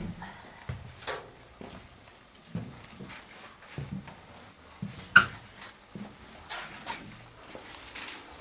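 Irregular footsteps and knocks in a narrow steel compartment, with one sharp clank about five seconds in.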